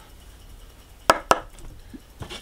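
Two quick taps of a heavy copper coin against a scratch-off lottery ticket, a fifth of a second apart, a little over a second in.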